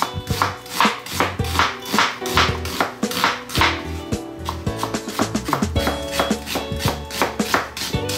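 Chef's knife slicing an onion thinly, the blade knocking on the cutting surface in quick even strokes, about three a second.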